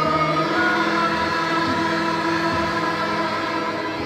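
A group of women singing a prayer song together, with a harmonium playing held notes underneath.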